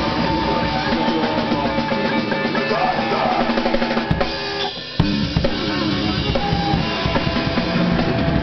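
A band playing loud, dense, chaotic extreme music live, with the drum kit to the fore. About four and a half seconds in the music drops out abruptly for half a second, then crashes back in on a sharp hit.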